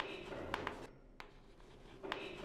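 Chalk writing on a blackboard: scratchy strokes with a few sharp taps through the first second, then a single tap a little after.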